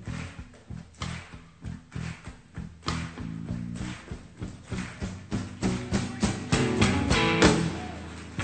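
Live rock band playing an instrumental vamp over a bass line, with the drum kit featured. The drum hits build into a busier, louder fill in the second half and ease off near the end.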